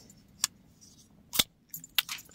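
Kubey Nova folding knife being worked by hand: three short, sharp metallic clicks of the blade action, about half a second in, near one and a half seconds, and at the end.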